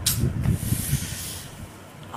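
A person blowing out a long, hissing breath, worn out by the heat, over the rumble of a handheld phone being moved.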